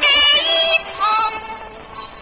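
Old recording of a Cantonese opera-style film song: a high female voice holds two long notes over instrumental accompaniment, the second softer than the first.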